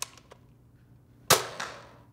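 Nerf N-Strike Elite DualStrike spring blaster: small plastic clicks as the priming handle is pulled back, then about a second later one sharp snap as it fires a dart, dying away quickly.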